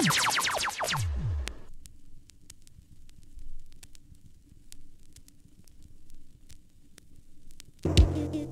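A dub record playing on a vinyl turntable. It opens with a quick run of falling, echoing electronic sweeps, then gives several quiet seconds of vinyl surface crackle over a faint low drone. The full rhythm comes in loudly right at the end.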